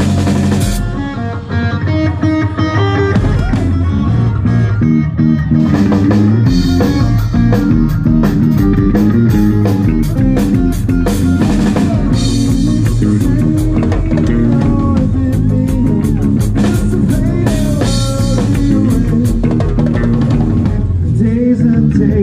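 A live rock band playing electric guitar, bass guitar and drum kit, with steady drumming throughout. The sound thins briefly about a second in, then the full band comes back in.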